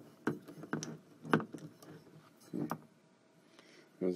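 A few light clicks and taps of small metal door-latch hardware and screws being handled, the loudest about a second and a half in, with a short cluster of handling noise a little later.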